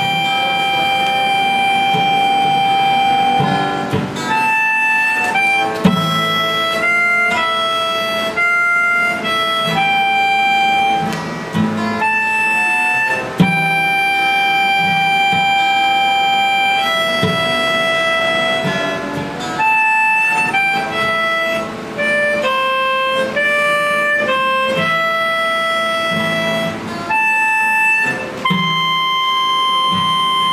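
Harmonica playing a melody of long held notes over acoustic guitar strumming, played live.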